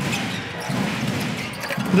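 Basketball arena crowd murmuring during live play, with the ball bouncing on the hardwood court.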